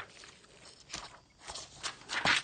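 Spiral-bound books being handled: a few soft taps and paper rustles, the first about a second in and two more near the end, with quiet between.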